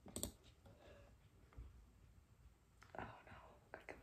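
Faint breathy sounds from a person with a hand over her mouth: a short breath right at the start, then near quiet, then a few more breaths near the end.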